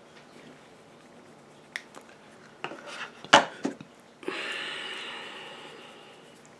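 Makeup products and tools clicking and clattering as they are handled and set down: a few light clicks, a run of sharper knocks about three seconds in, then a clatter about four seconds in that rings on and fades over a second or so.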